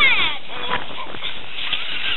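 A short, high-pitched squeal falling in pitch right at the start, then quieter scattered sounds.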